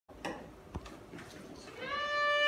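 A short voice-like sound and a single knock, then near the end a fiddle starts a long bowed note.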